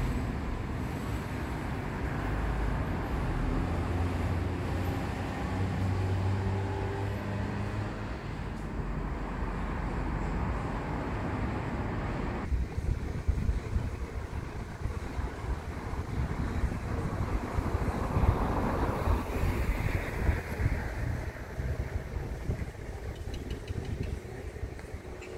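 Outdoor road traffic: a vehicle engine running with a steady low hum. About halfway through it changes abruptly to a rougher, uneven rumble, and near the end a vehicle passes, swelling and then fading.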